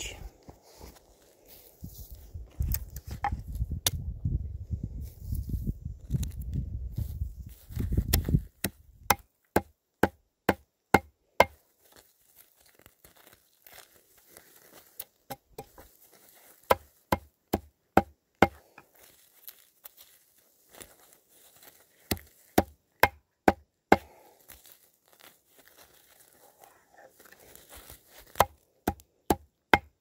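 A knife blade chopping against wood, a series of sharp clicks that come in quick runs of several strikes from about nine seconds in. Before that, a few seconds of low rumbling handling noise.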